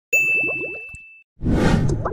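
Title-card sound effects: a bright ding that rings out and fades over about a second, followed by a whoosh starting about one and a half seconds in.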